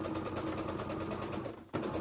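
Baby Lock Sofia 2 sewing machine stitching at a steady speed through thick layers of knit sweater and wool blazer fabric, with a rapid even needle rhythm. It stops briefly about three-quarters of the way through, then starts again.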